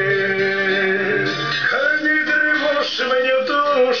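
A man singing a slow song with long held notes to his own acoustic guitar accompaniment.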